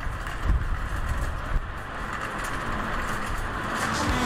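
Metal shopping cart rolling across parking-lot asphalt, its wheels and wire basket giving a steady rough rumble and rattle with a few small knocks, over outdoor wind and traffic noise.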